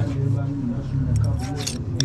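People talking, with a hand file rasping across a brass strip on a small metal stake in a few short strokes near the end.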